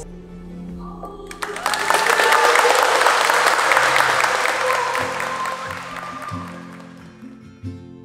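Crowd of wedding guests applauding, swelling in about a second and a half in and fading out by about seven seconds, over background music. A strummed acoustic guitar comes in about five seconds in.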